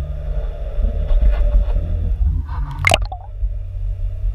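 Muffled underwater rumble picked up by a submerged camera in its housing as it moves through the water, with one sharp knock on the housing about three seconds in.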